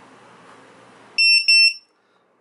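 ViFLY Beacon lost-model alarm buzzer sounding two loud, high-pitched beeps about a second in. It is in alarm mode after a detected crash, the very loud beeping meant for finding a downed drone.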